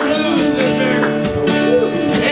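Live acoustic blues: two acoustic guitars strumming and picking, with a harmonica played into a microphone carrying the wavering, bending lead line above them.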